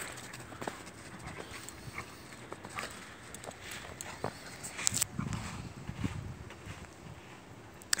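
Faint, scattered crunching of footsteps in snow, with a brief low rumble about five seconds in.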